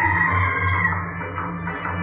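Bhagoriya folk dance music: a steady low drum beat under a held high-pitched melodic note that drops away about a second in.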